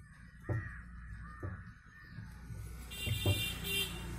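Faint crow caws, two arched calls in the first second and a half, over a steady low hum, with a few light knocks.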